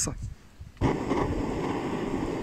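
Hand-held gas torch on a gas canister burning with a steady hiss, its flame aimed at driftwood kindling to light a campfire; the hiss starts suddenly just under a second in.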